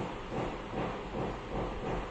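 Pink embroidery yarn and needle being drawn through knitted wool and the wrapped coils of a bullion stitch: a series of soft, repeated rustles of yarn rubbing on yarn.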